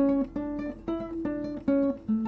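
Acoustic guitar played one note at a time: a run of about five single picked notes, each ringing until the next is plucked.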